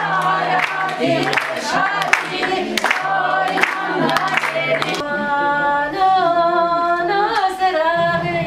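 A group sings to rhythmic hand clapping over a steady low note. About five seconds in the clapping stops and the singing goes on in long, drawn-out, wavering notes.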